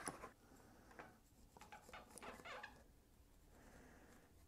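Faint scratching and light clicks of a cardboard box of sidewalk chalk being opened and a chalk stick being taken out.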